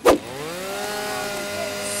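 A toy chainsaw's engine sound. A click, then a steady motor drone that dips in pitch at first and then holds level.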